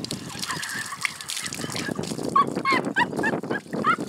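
Domestic fowl calling: a quick series of short, pitched calls that starts about two seconds in.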